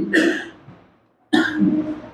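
A man's cough: a sudden burst about two-thirds of the way in, after a short pause.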